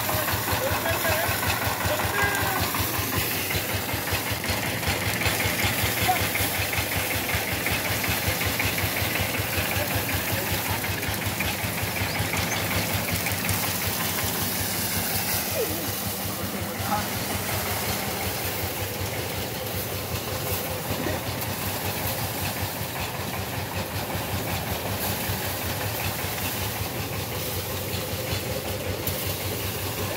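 Belt-driven paddy threshing drum powered by an engine, running steadily with an even rapid pulse while rice sheaves are held against it to strip the grain.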